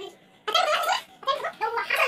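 Boys' voices talking, starting about half a second in after a brief lull.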